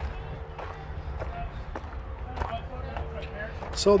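Footsteps crunching on a gravel driveway at a steady walking pace, a step about every half second. A man's voice starts right at the end.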